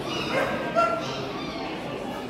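A small dog giving two short, high yips in the first second, the second one the louder, over the murmur of voices in a large hall.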